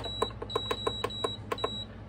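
Heidi Swapp Minc Mini foil applicator being switched on and its heat setting selected: about ten quick button clicks, with a high electronic beep sounding in short stretches over most of them.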